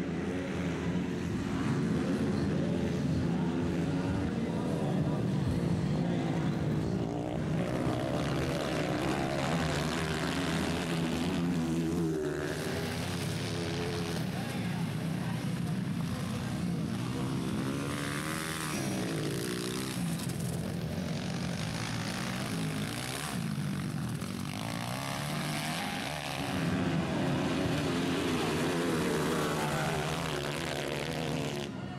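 Several 230cc dirt-bike engines racing, revving up and down with pitch rising and falling through throttle and gear changes; the sound swells as bikes come close, loudest near the start and again near the end.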